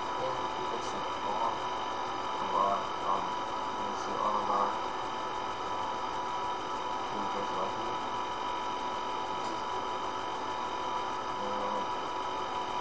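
Steady electrical hum and hiss from a computer recording setup, with faint, indistinct voice fragments in the first few seconds.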